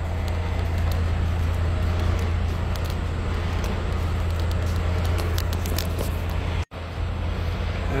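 Steady low hum of an idling diesel truck engine with general yard noise and a few light clicks. The sound cuts out for an instant about two-thirds of the way through.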